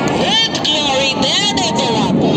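A commentator's voice over the public-address system, its pitch rising and falling in long arcs, over a steady rushing noise.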